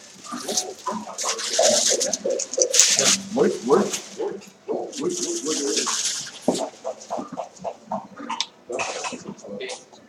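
People talking indistinctly, with hissing, breathy sounds mixed into the talk.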